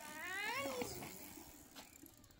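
A cat meowing once, a drawn-out meow that rises and then falls in pitch within the first second, then fades.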